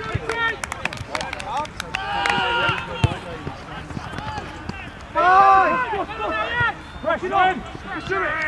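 Players' voices shouting across an open football pitch, with a long call about two seconds in and the loudest shout about five seconds in. A single sharp knock about three seconds in.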